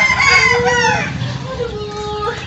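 A rooster crowing: one long call in the first second, falling away at its end.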